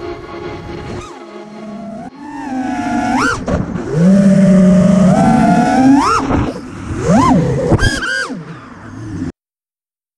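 FPV freestyle quadcopter's motors and propellers whining. The pitch rises and falls with the throttle, in several sharp upward sweeps. The sound cuts off suddenly near the end.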